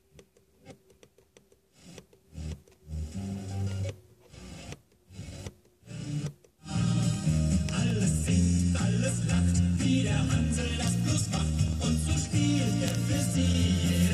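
Car FM radio being tuned up the band: short broken snatches of station audio with muted gaps for the first six or so seconds, then the tuner settles on a station and music plays steadily with a strong bass line.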